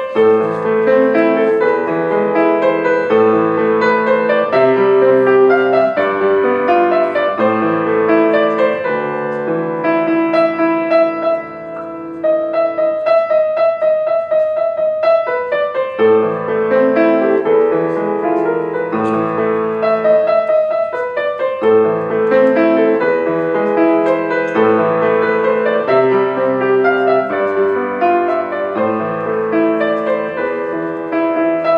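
Grand piano played solo: a medley arrangement of three familiar songs, sustained chords under a melody that keeps returning to one high note. The playing turns briefly softer about twelve seconds in.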